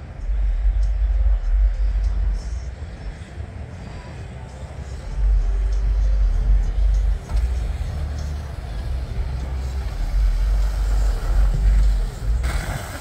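Wind buffeting the phone's microphone: a low rumble that comes in gusts, strong for the first two seconds, dropping back, then strong again from about five seconds in.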